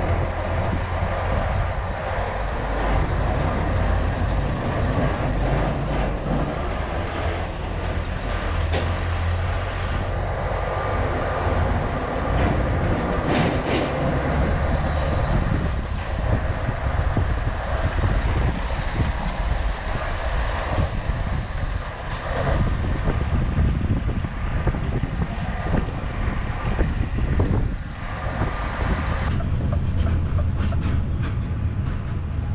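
Scania S650 V8 truck on the move at low speed: steady engine rumble with road noise, heard through the open cab window.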